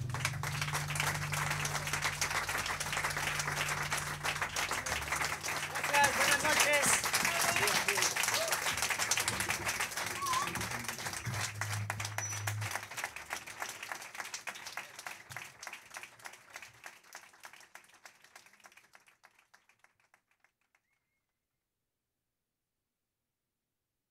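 A small club audience applauding, with a few voices calling out. The band's last low note rings on under the clapping for the first few seconds. The applause then fades away over the last several seconds.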